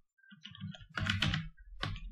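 Computer keyboard typing: a quick run of keystrokes, with a sharper single click near the end.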